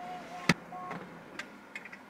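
Fingernail taps on a smartphone screen: one sharp click about half a second in, then a few faint ticks, over a faint wavering tone.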